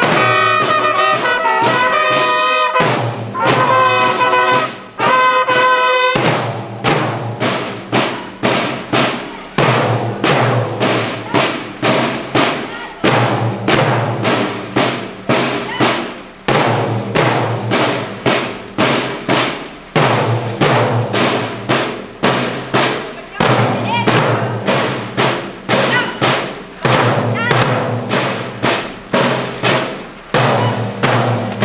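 School marching band (banda de guerra) playing: bugles sound a call for about the first six seconds, then the snare and bass drums carry on alone in a steady marching beat whose phrase repeats about every three and a half seconds.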